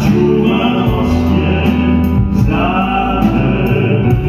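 A male vocal trio singing a slow ballad with long held notes, accompanied by a live band of keyboard, guitars and drums.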